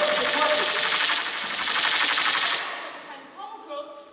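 A loud, rapid rattling sound effect, a fast machine-gun-like stutter played over the hall's speakers. It cuts off about two and a half seconds in.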